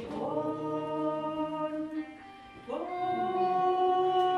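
Slow hymn music of long held notes, changing pitch every second or two, with a brief quieter gap a little after two seconds in.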